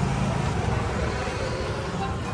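Steady roadside traffic noise, a continuous rumble with no distinct events.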